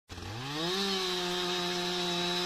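Two-stroke gas chainsaw revving up over the first half second or so, then running steady at high speed as it cuts into a fallen log.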